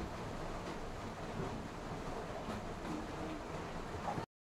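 Chopped onion, garlic and ginger frying in hot oil in an aluminium kadhai: a steady sizzle as they are stirred with a metal spatula.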